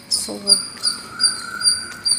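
Cricket chirping: short high-pitched chirps repeating evenly, about three a second.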